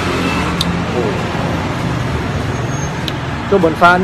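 Road traffic noise: a motor vehicle's engine running steadily nearby, a low hum under an even haze of road noise.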